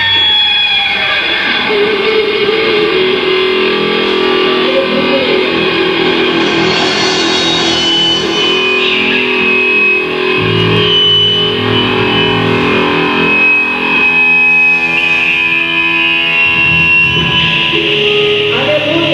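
A heavy metal band playing live, led by electric guitar holding long sustained notes and chords that change every few seconds. A deep bass comes in about ten seconds in and again near the end.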